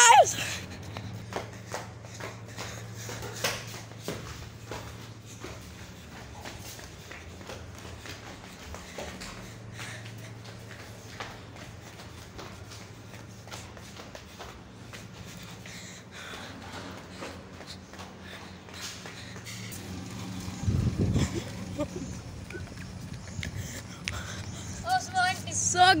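Handling noise from a phone camera being carried down a building, with small scattered clicks and knocks over a steady low hum, and a brief louder rumble a few seconds before the end.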